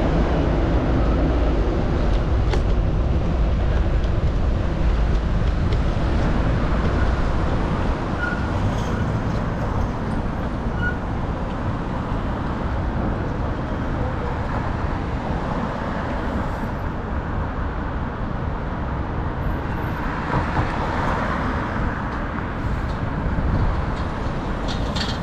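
Steady city street traffic rumble, a little louder for the first eight seconds, with a car coming past near the end.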